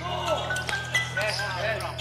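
A basketball being dribbled on an indoor court, with players shouting, over a steady low hum.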